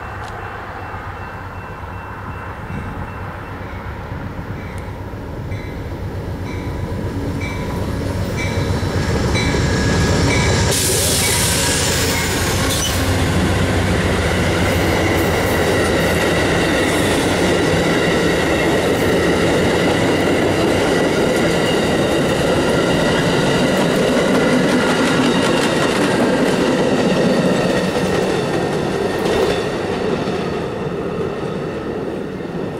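An Amtrak diesel passenger train passes close by. The locomotive's engine and rumble build over the first ten seconds, then the coaches roll past with steady wheel noise and clicking over the rail joints. A bell rings about twice a second as the train approaches, and there is a short hiss about eleven seconds in.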